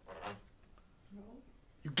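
A man's lecturing voice at a pause: a short breathy sound about a quarter second in, a faint low hum in the middle, then speech resuming near the end.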